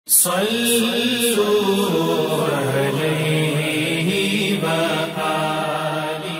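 A single voice chanting a slow, melodic vocal line with long held and gently wavering notes, in the style of an Islamic recitation or unaccompanied nasheed. It sets in suddenly at the start and eases off near the end.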